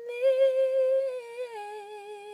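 A woman's unaccompanied voice humming a long sustained note, which steps down to a lower held note about three-quarters of the way through.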